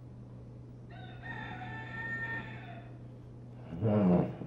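A rooster crowing once in the background, one call about two seconds long, over a steady low hum. Near the end a short, louder voice sound cuts in.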